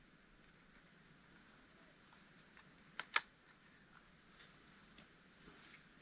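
Small plastic folding drone being handled, two sharp clicks close together about three seconds in, with a few faint ticks around them, as its arms are folded against the body.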